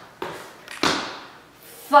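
Sneakered feet landing with thuds on a tile floor during a jumping half burpee: a light thud just after the start, then a firmer one just under a second in.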